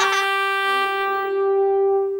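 One long, steady horn-like note from the cartoon's music, held about two seconds on a single pitch, its brightness dying away about halfway through.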